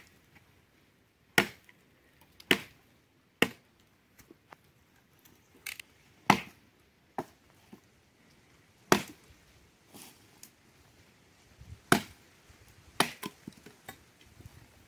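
Axe chopping dry wooden stakes into firewood: a series of sharp blows of the axe head into dry wood, irregularly spaced about a second or more apart.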